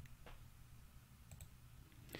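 Near silence with a couple of faint clicks from a computer mouse as a web page tab is clicked.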